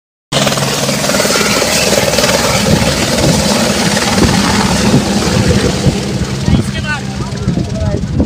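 Helicopter's rotor and turbine running steadily as it lifts off and flies away, loud and close, with a low steady hum beneath the noise.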